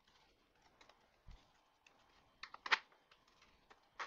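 Light clicks and knocks of 3D-printed plastic robot arm parts being handled and fitted together. There is a soft low bump about a second in and a louder cluster of clicks a little before three seconds in.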